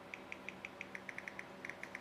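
Faint key-press ticks from typing on a Samsung Galaxy S3's on-screen keyboard: a quick, uneven run of short ticks all at the same pitch, about seven a second.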